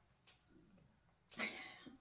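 Quiet room for about a second, then a short breathy sound from a person's mouth or throat, a breath in or a throat noise, lasting about half a second.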